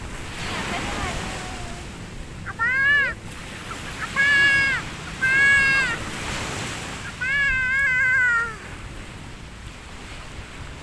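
A child's high-pitched calls or squeals, four of them, each rising and falling in pitch and the last the longest, over the steady wash of surf.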